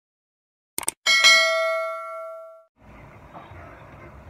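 Two quick mouse-click sounds followed by a single bright bell ding that rings out and fades over about a second and a half: the sound effect of a subscribe-button and notification-bell animation. A faint steady room hiss follows near the end.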